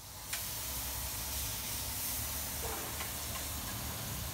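Steady hiss of steam and cooking from a pot on a street-stall burner.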